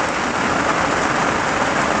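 Heavy rain from a summer thunderstorm pouring down steadily, an even, unbroken downpour.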